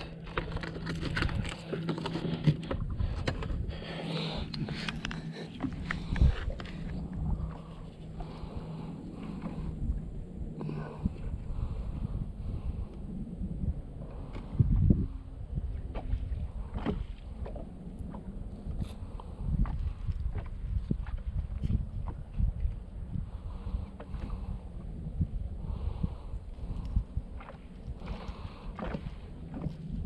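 Electric trolling motor humming steadily, the hum dying away about ten seconds in; after that, close handling knocks and clicks over a low rumble.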